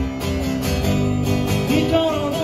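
Live acoustic guitar strumming with an acoustic bass guitar playing underneath, in a short break between sung lines. A man's singing voice comes back in near the end.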